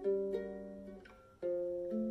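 Guitalele played fingerstyle: plucked notes ring and fade away over about a second, then a new chord is struck about a second and a half in and rings on.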